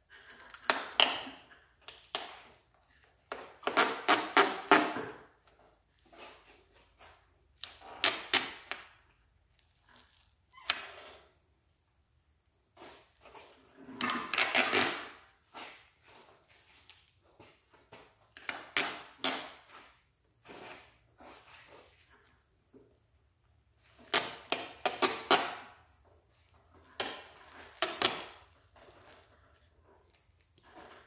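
Duct tape being pulled off the roll in short crackling rips, about eight of them a few seconds apart, as it is wrapped around a push mower's handle.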